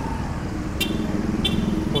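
Street traffic with a motorcycle engine running close by, and three short high-pitched beeps a little over half a second apart in the second half.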